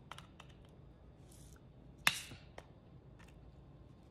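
Plastic cap of a brand-new spice container being worked at by hand: a few faint clicks, then one sharp click with a brief rasp about two seconds in. The top is stuck and hard to get off.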